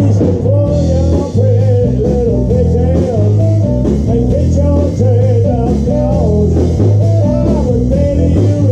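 Blues band playing live through a PA: a loud electric bass line and drums under guitar and saxophone, with a bending lead line from the front man at the microphone.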